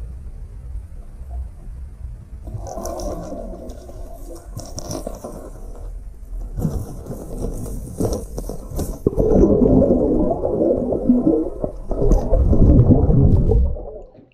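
Water heard through an underwater camera: a muffled low rumble with churning, sloshing surges, starting about two and a half seconds in and loudest over the last five seconds, as schooling bass rush and fight for a topwater lure at the surface.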